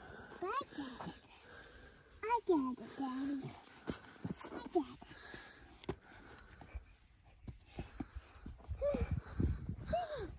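A small child's short wordless vocal sounds, a few brief calls with sliding pitch, spread over several seconds. Low thumps and rumble come in near the end.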